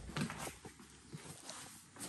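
Footsteps on a bare, debris-strewn floor: a few faint taps and scuffs, spaced irregularly.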